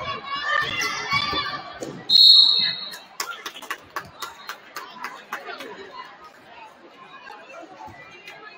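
Referee's whistle blown once, a sharp, steady, high blast of about half a second that stops play, ringing in a large gym. Voices come before it, and scattered sharp knocks and squeaks from the court follow.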